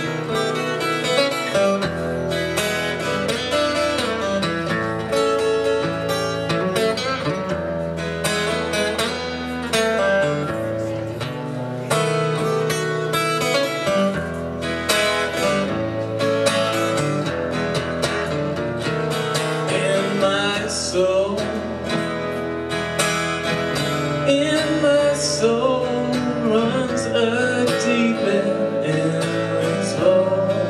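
Solo acoustic guitar playing the opening of a blues song, strummed and picked chords.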